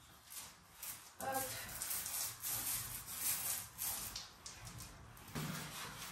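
Metal plastering knife scraping joint compound across plasterboard in a series of short strokes.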